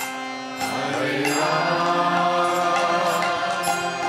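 Harmonium playing sustained chords, joined about half a second in by a group of voices chanting the response line of a devotional kirtan.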